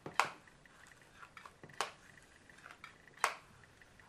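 Hair straightener being clamped and handled: three sharp clicks about a second and a half apart, with faint ticks between them.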